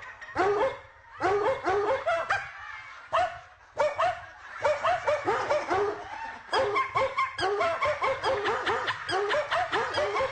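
Rapid, continuous barking, several short barks a second, with brief breaks about a second in and around three and a half seconds in.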